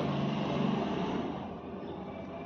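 A steady low motor hum that is louder at first and eases off about a second and a half in.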